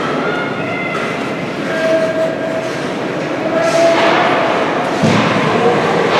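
Ice arena game noise: a steady din of spectators calling out over the sound of skates and sticks on the ice. It swells about halfway through, and a sharp thud comes near the end.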